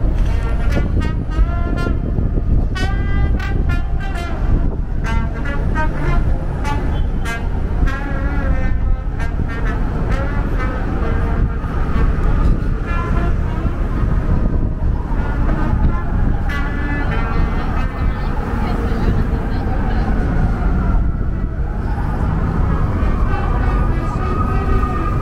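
Busy downtown street traffic: a steady rumble of passing vehicles with people talking nearby. Near the end, a siren comes in with a long gliding wail.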